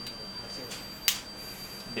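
A flat screwdriver prying at the small plastic bottom panel of a BlackBerry 9700 phone: one sharp click about a second in, with a fainter tick shortly before it.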